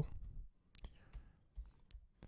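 A few faint, separate computer keyboard keystrokes as a short search term is typed.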